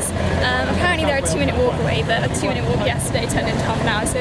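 A woman's voice talking over steady outdoor street noise, with a low rumble of wind on the microphone.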